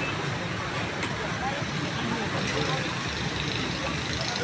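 Steady urban street ambience: traffic noise with background chatter of many voices.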